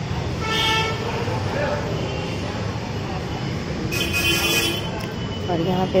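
Steady low rumble of background noise with two short horn toots, one about half a second in and a brighter one about four seconds in; voices start near the end.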